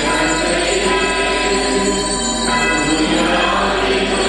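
A church choir singing a hymn with instrumental accompaniment, small bells jingling along with it.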